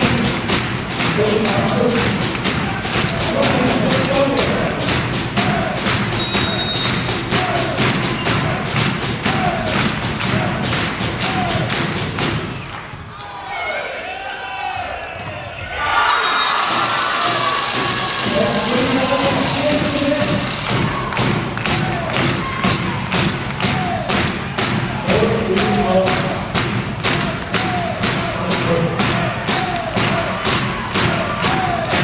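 Volleyball crowd in a sports hall beating out a steady rhythm, about three beats a second, with voices over it. The beating stops for a few seconds about halfway through, then starts again.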